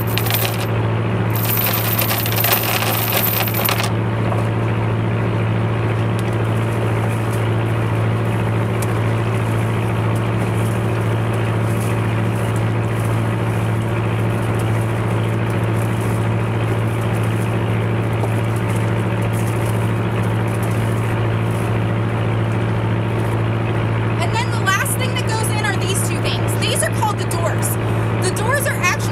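A trawler's engine running with a steady low drone. A rushing noise sits over it for the first few seconds.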